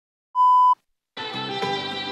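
A short, steady test-tone beep from the colour-bar leader, then a moment of silence, then instrumental music starting just over a second in.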